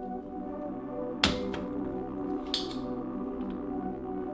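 Background music with steady sustained tones. About a second in comes one sharp, loud snap, and a softer click with a brief hiss follows about two and a half seconds in: a spring-loaded desoldering pump firing as solder is cleared from a circuit board.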